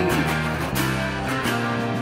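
Grunge rock recording: strummed guitars holding full chords over a steady low end.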